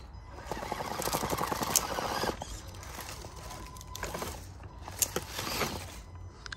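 Small electric RC rock crawler's motor and gearbox whining as it creeps over rocks under load, with a few sharp knocks of the tyres and chassis on stone about five seconds in.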